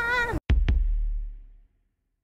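A boy's drawn-out, high, wavering call that cuts off suddenly, followed by two sharp hits a fifth of a second apart with a deep boom that fades over about a second.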